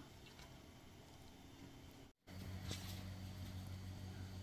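Faint soft rustling of hands pressing dry flour onto raw chicken pieces in a metal sheet pan, over a low steady hum. The sound cuts out for an instant just past halfway, and the hum is a little louder after it.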